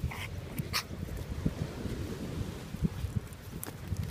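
Boston Terrier puppy vocalising while playing, with two short, sharp sounds in the first second.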